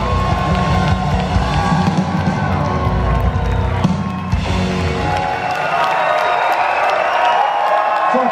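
Live rock band with electric guitar, bass and drums playing the final bars of a song; about halfway through the bass and drums stop and the guitar rings on while the crowd cheers.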